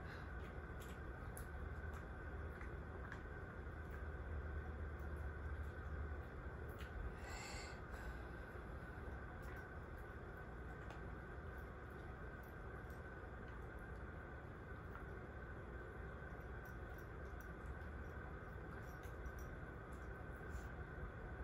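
A small 11-year-old dog slowly chewing a hard treat: faint, scattered clicks and crunches of chewing over a low steady hum. The treat is hard for the old dog to get through.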